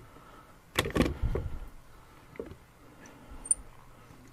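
A cluster of knocks and clicks from a small handheld LED panel light being moved and set by hand, loudest about a second in, followed by a few light ticks.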